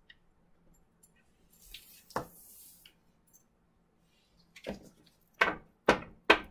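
Tarot cards being handled and laid on a tabletop: a soft sliding hiss about two seconds in with a sharp tap, then a few sharper taps and clicks of cards near the end.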